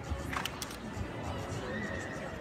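A KWPN Dutch Warmblood show jumper's hooves hit the arena footing in a quick cluster of thuds about half a second in as it lands and canters away from a fence. Steady indoor-arena crowd hum lies underneath.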